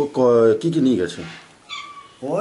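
A man's voice making drawn-out, wavering vocal sounds without clear words for about the first second, with a brief higher sound near the end.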